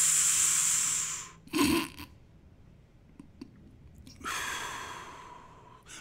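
A long, hissing breath drawn in through the lips, like a mimed toke on a joint, then after a pause a softer exhale that fades away; a short low sound comes about a second and a half in. The guitar is silent throughout.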